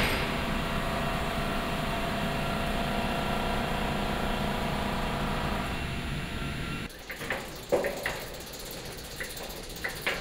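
Steady mechanical hum with several steady tones, like building ventilation or climate-control machinery. It cuts off about seven seconds in and gives way to quieter room sound with a few soft knocks and clicks.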